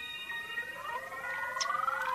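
A siren-like electronic tone gliding steadily upward, several pitches rising together, over held tones from the backing track that fade out in the first second.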